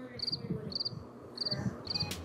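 Cricket chirping: short high-pitched chirps of a few quick pulses each, about two a second, fairly faint.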